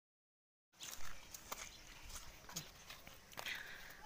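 After about a second of dead silence, faint outdoor background with a few scattered light knocks and clicks, the loudest about a second in.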